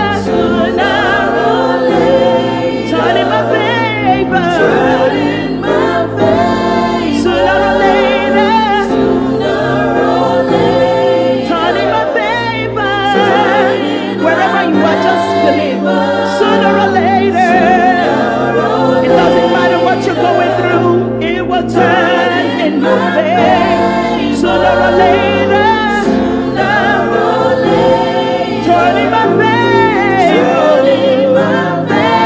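Gospel worship music: a woman singing lead over backing vocals and keyboard accompaniment. The sung line wavers and slides continuously over a sustained bass that moves from chord to chord.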